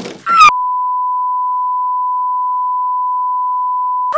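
A censor bleep: one steady, pure beep held for about three and a half seconds, masking a shouted swear word. It cuts in about half a second in, right after a short shout.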